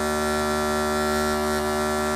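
A traditional Thai folk wind pipe holding one long, steady reedy note. The note breaks off just after the end.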